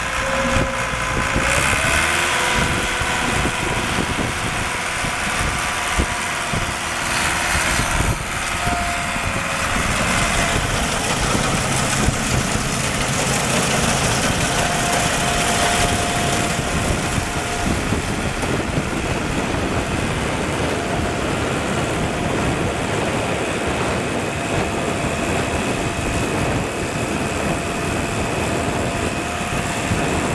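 1982 Hesston 6650 self-propelled swather's four-cylinder diesel engine running steadily as the machine drives across a field, with a thin steady whine over it that steps up in pitch about a second and a half in.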